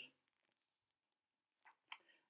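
Near silence, broken by a single sharp click near the end.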